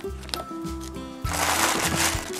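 Background music with steady notes and a bass beat; about a second and a quarter in, tissue paper and plastic packaging start to crinkle loudly as hands dig into the box.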